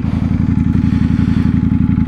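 Sport motorcycle engine running steadily at low revs, a fast even pulse, as the bike creeps through stopped traffic.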